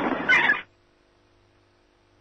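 A short voice-like sound, with a high, pitch-bending squeal near its end, cuts off abruptly about two-thirds of a second in. Near silence with a faint steady hum follows: the live broadcast's audio dropping out.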